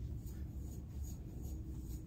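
Faint scratchy strokes of a wide-tooth comb being pulled through a kinky human-hair afro wig, over a low steady hum.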